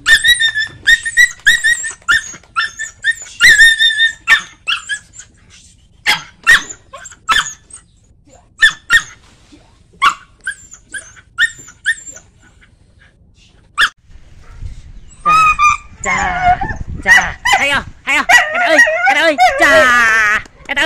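A tethered dog barking over and over in sharp, high-pitched barks, some in quick runs, with a short lull about two-thirds of the way through. Then a denser stretch of wavering high-pitched calls near the end.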